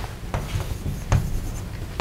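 Chalk writing on a blackboard: several short, sharp strokes and taps of the chalk.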